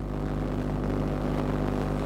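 Steady background noise with a low electrical hum and no speech, typical of an open live broadcast feed.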